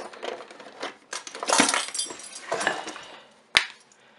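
Metal kitchen utensils clinking and rattling as a kitchen drawer is searched for a measuring spoon, with one sharp click near the end.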